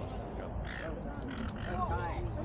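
A gull calling twice, short calls a little over half a second apart, over low crowd voices.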